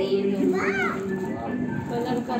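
A young girl's excited voice exclaiming over background music, with a short high rising-and-falling call under a second in.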